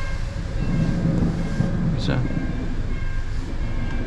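Low, steady rumble of a commuter train passing ahead, heard from inside the cabin of a car waiting in traffic.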